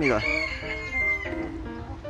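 A cock bird crowing: one long held call lasting about a second near the start. Background music plays under it.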